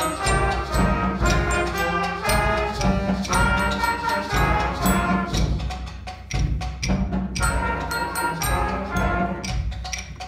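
Middle-school concert band playing, with woodwinds and brass (bass clarinet, saxophones, trumpets) over percussion that keeps a steady beat and a strong bass line.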